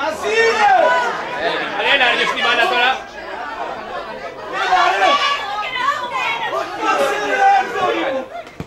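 Several voices of football players and spectators shouting and calling over one another during play, loud and overlapping, with a brief lull about three seconds in.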